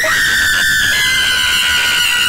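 High-pitched screaming, held without a break and sliding slowly lower in pitch.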